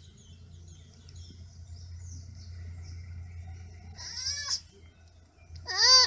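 Baby sloth calling: two short, high-pitched cries, each rising and then falling in pitch, about four seconds in and again near the end, the second louder.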